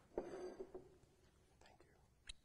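A person speaking a few quiet, low words, lasting about half a second near the start, then near silence.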